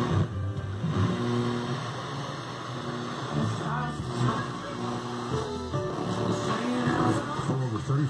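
Radio broadcast music and talk playing from a JVC MF-4451 stereo receiver. The sound changes as its analog tuning dial is turned from station to station.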